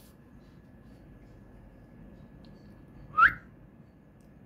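A single short, loud whistle gliding upward, about three seconds in, over quiet room tone with a faint steady high tone.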